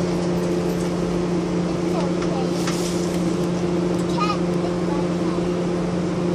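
Steady mechanical hum from a running machine, holding one low pitch throughout, with a few faint brief sounds around two and four seconds in.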